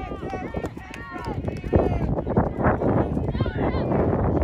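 Several voices shouting and calling out across a soccer field during play, with scattered short thuds.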